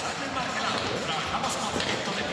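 Arena crowd hubbub, with a handball bouncing on the court.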